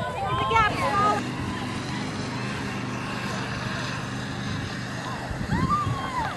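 Spectators shouting encouragement to passing cross-country runners in the first second and again near the end. Between the shouts there is a steady low hum with wind noise on the microphone.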